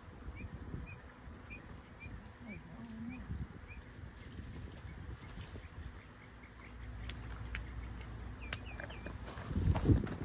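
A stone knocking on tropical almond nuts on a concrete slab to crack them open, a few sharp knocks with the loudest just before the end. A small bird chirps repeatedly, about twice a second, through the first three seconds.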